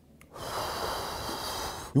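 A man takes one long, airy breath through his mouth, about a second and a half long, with no voice in it. He is showing the cool rush of air through a mouth with a menthol Halls lozenge in it.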